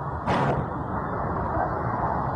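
Muffled, steady noise of a low-quality audio recording, with a short brighter burst about a quarter-second in.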